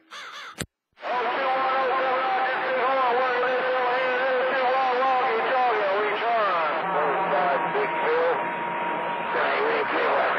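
A sharp click about half a second in, then after a brief gap a loud CB radio signal received on channel 28 skip: a garbled jumble of wavering, distorted voice-like calls and whistles, with a steady whistle joining in later.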